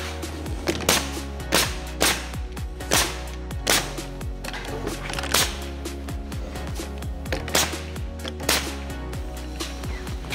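Pneumatic nail gun firing a string of sharp shots, spaced about half a second to a second apart with a short pause partway through, driving nails through trim into a wooden door. Background music plays throughout.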